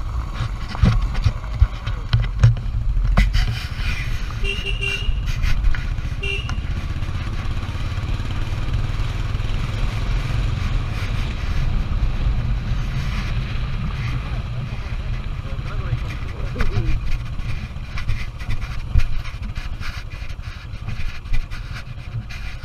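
Royal Enfield Electra 350 twin-spark single-cylinder engine running as the bike rides over a rough dirt track, with heavy wind rumble on the microphone and scattered knocks from the bumps.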